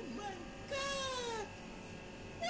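High-pitched cries that fall in pitch: two short ones at the start, then one longer, drawn-out cry about a second in.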